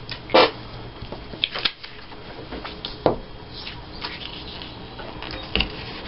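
Paper cutouts being handled and pressed onto a paper page, with soft rustling and a few short, sharp clicks and knocks.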